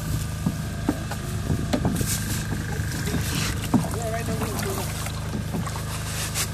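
Water sloshing and splashing in a plastic tub as a black gold-panning box full of concentrate is worked under the surface and lifted out, water running off it, with irregular splashes over a steady low motor hum.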